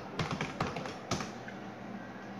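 Computer keyboard keystrokes as the command 'ranger' is typed and entered: a quick run of key clicks, then a single louder click about a second in.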